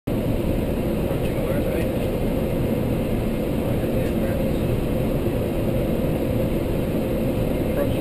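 Steady low rumble of airflow and engines inside an airliner's flight deck on final approach, even in level throughout.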